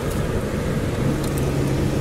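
Car driving along a mountain road, heard from inside the cabin: a steady rumble of engine and tyres, with a low steady hum joining in about a second in.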